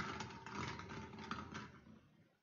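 Plastic draw balls clattering against each other and a glass bowl as a hand stirs through them, a dense rattle that dies away near the end.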